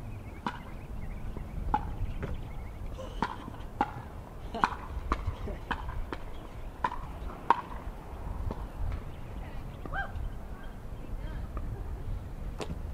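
Stunt scooter wheels rolling on a hard court surface, with irregular sharp clacks as the scooter's deck and wheelie bar tap down during manual attempts.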